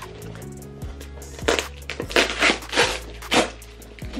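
Product packaging being handled: a cluster of sharp, irregular crackles and knocks in the second half, over background music with steady low bass notes.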